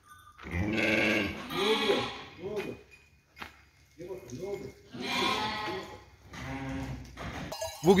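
Sheep and lambs bleating in a barn: several long, wavering bleats, one after another.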